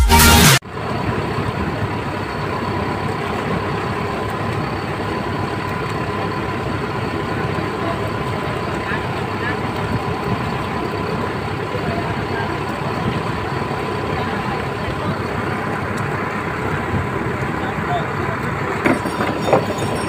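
Dance music cuts off abruptly within the first second. What follows is the steady running of a motorized outrigger fishing boat under way, engine noise mixed with water rushing past the hull, with a few knocks near the end.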